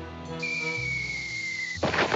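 Cartoon sound effect: a long whistle tone, slowly falling in pitch, cut off near the end by a short noisy crash, over background music.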